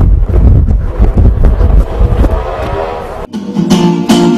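Live music with a heavy bass, then after a sudden cut a bit over three seconds in, acoustic guitar strumming chords.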